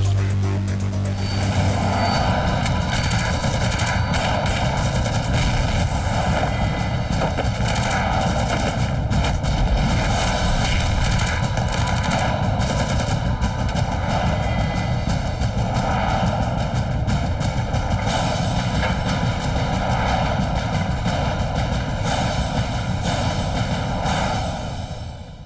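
Sustained rapid automatic gunfire, shots packed close together for the whole stretch, mixed with a driving action music score.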